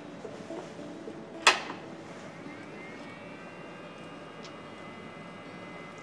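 A sharp click about one and a half seconds in as power is switched on to a Reliance Electric SP500 inverter drive, followed by a faint whine that rises in pitch and then holds steady as the drive powers up and starts its self-test.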